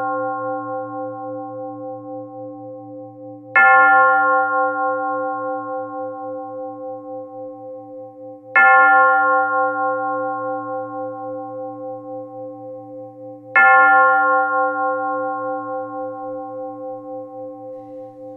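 A single bell tolled slowly, struck about every five seconds (three strokes, with the ringing of one just before), each stroke ringing out and fading slowly with a wavering hum.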